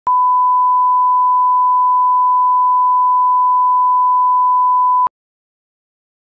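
1 kHz line-up test tone accompanying broadcast colour bars: one steady pure tone that starts abruptly and stops suddenly about five seconds in.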